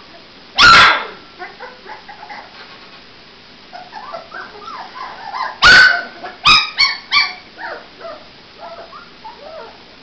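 Puppies barking and whimpering: a loud bark about a second in, another just before six seconds followed by three quick sharp yips, with small whines and yelps in between.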